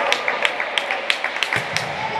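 Rhythmic hand clapping, about three claps a second, with one duller thud about one and a half seconds in.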